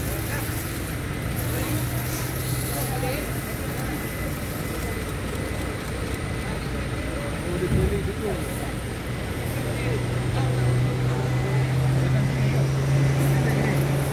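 Heavy truck's engine idling, a steady low hum that grows louder near the end, with scattered voices of people talking around it.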